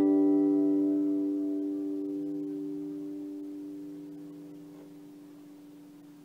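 An acoustic guitar's final chord ringing out after one strum and slowly fading away, its low notes sustaining longest.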